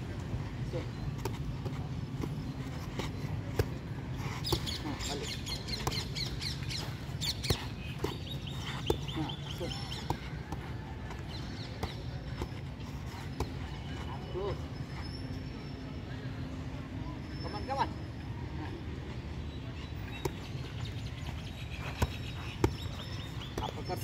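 Boxing gloves striking focus pads in scattered single smacks, over a steady low background rumble.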